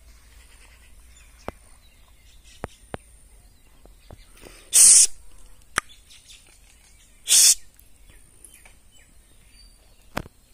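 Two loud, harsh, rasping bird calls about two and a half seconds apart, with a few faint clicks between them against quiet lakeside background.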